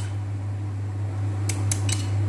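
A steady low hum, with a few light clicks of a metal spoon against a ceramic dish about one and a half seconds in as a liquid dressing is stirred.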